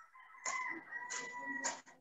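A rooster crowing once, faintly, in one drawn-out call of about a second and a half, picked up by a participant's microphone on a video call.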